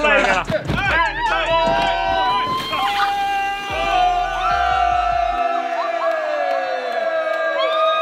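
A group of young men cheering and shouting over background music. After about three seconds the shouting stops and the music carries on with long held notes, its bass dropping out about five seconds in.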